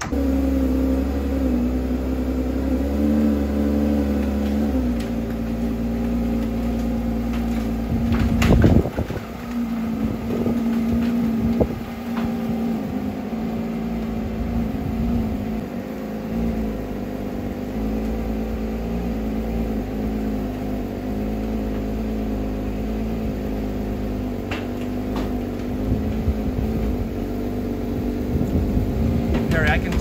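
Porsche 992 GT3's flat-six engine starting and running at a steady idle inside an enclosed car trailer, exhaust vapour showing it is a cold start. The idle drops slightly about five seconds in, and there is one brief louder noise about eight seconds in.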